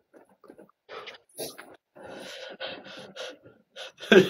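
Quiet stifled laughter: irregular breathy snorts and puffs of air held back behind hands over the mouth.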